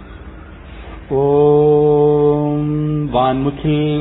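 A man's voice begins chanting a mantra about a second in, holding one long steady note for about two seconds, then moving on into shorter sung syllables.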